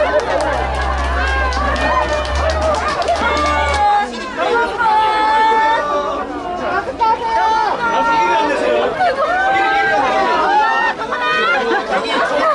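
A dense crowd of fans talking and calling out over one another, many voices at once, loud and bustling as the crowd presses around.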